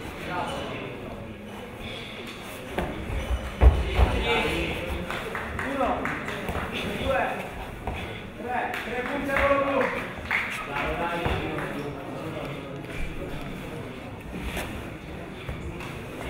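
Indistinct voices of people talking and calling out, echoing in a large hall, with a single thump about four seconds in.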